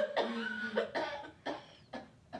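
A young woman laughing hard, a string of breathy bursts that get shorter and fainter as it dies away.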